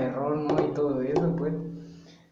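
Speech only: a person talking, trailing off near the end.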